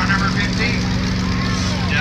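Demolition derby car engines running together in a steady low drone, with voices over it near the start and again near the end.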